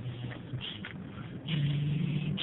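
A man humming a low, wordless tune in a moving car's cabin over steady road noise; the held note gets louder about one and a half seconds in.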